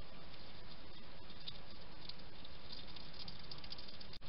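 European hedgehog crunching and chewing dry pellets from a ceramic dish: rapid small crackling clicks that grow busier near the end, over a steady hiss.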